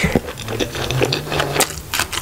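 Close-miked eating sounds: wet chewing, lip smacks and sticky finger-and-mouth clicks from a handful of rice and curry gravy, a quick irregular run of clicks, with a low steady hum through the middle.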